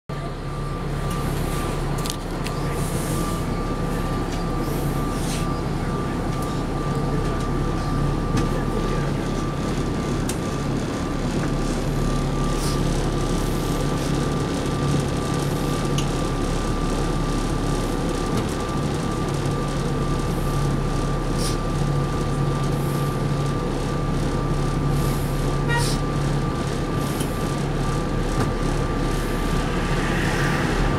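Articulated transit bus's diesel engine running at a standstill, heard from inside the cabin as a steady low hum with a thin, steady high whine over it.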